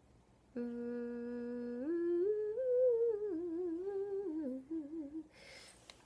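A person humming: one note held for about a second, then a short tune that climbs, wavers and sinks, trailing off about five seconds in.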